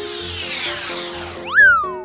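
Cartoon sound effects over children's background music: a long falling whistle-like glide, then about one and a half seconds in a short tone that rises sharply and falls away again, the loudest moment.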